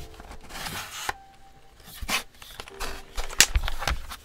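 A few sharp knocks and light rubbing as an aluminum keyboard is handled and its wrist rest is slid into the groove along its front edge, then set down on the desk. The sharpest knock comes about three and a half seconds in.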